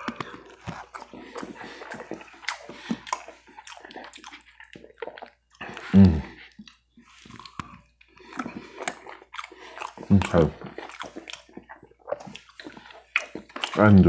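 Close-miked chewing of a meatball in marinara sauce: wet mouth clicks and smacks, with a second forkful taken partway through. Two short vocal sounds break in, around 6 s and 10 s.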